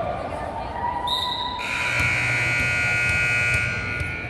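A steady high-pitched signal blast, a whistle or buzzer tone, starts about one and a half seconds in and is held for about two seconds, echoing in a large gym. Voices are heard before it.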